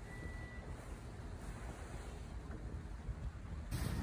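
Faint wind and sea noise from open water, a steady rushing hiss with no distinct events, growing a little louder near the end.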